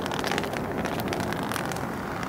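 Steady outdoor street rumble, with wind buffeting the microphone and faint scattered clicks over it.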